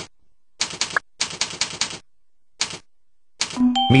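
Computer keyboard being typed on: short quick runs of key clicks, about ten a second, with pauses between the words.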